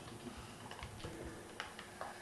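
Faint, irregular clicking of laptop keyboard keys being typed on, a few scattered taps.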